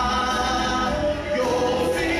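Church congregation singing a hymn together, with long held notes.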